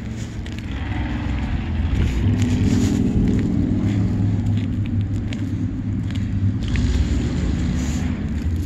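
A steady low rumble that swells slightly about two seconds in, with a few faint clicks over it.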